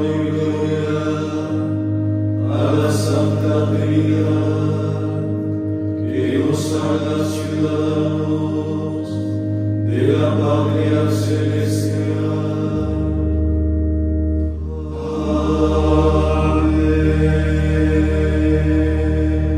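A group of men's voices chanting a psalm together in verses that start every few seconds, over a sustained instrumental drone whose bass note drops about two-thirds of the way through.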